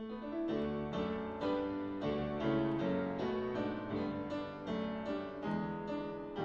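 Grand piano playing a jazz passage of repeated chords, about two a second, with a low bass line underneath.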